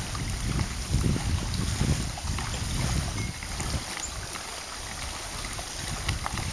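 Wind buffeting the microphone in uneven gusts, strongest in the first half and easing in the second, over a faint hiss and the small lapping of waves on the lake.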